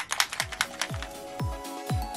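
Background electronic music with a deep kick drum about twice a second, coming in about half a second in, after a few quick tapping clicks.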